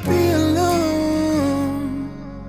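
Music: a male singer holds a wordless sung note that wavers and steps down in pitch about one and a half seconds in, over soft instrumental backing with a steady low bass.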